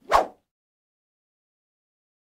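A short transition sound effect: one brief hit lasting about a third of a second, with a low thud under it.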